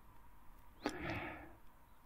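Mostly quiet room. About a second in comes a faint click, then a short, soft breath.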